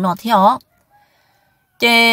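A rooster crowing, starting near the end as one steady held note, after a phrase of speech and a second of near silence.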